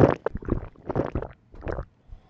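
A person drinking close to the microphone: a quick run of gulps and swallows, about six in two seconds.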